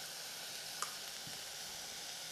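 Chopped vegetables and spice powder sizzling in hot oil in a pressure cooker pan on the stove: a steady, even hiss, with one light click a little under a second in.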